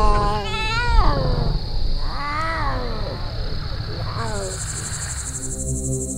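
Lion cubs calling: three high, wavering mewing calls, the first long and drawn out, the next two shorter. A steady insect trill starts about four seconds in, and sustained music enters near the end.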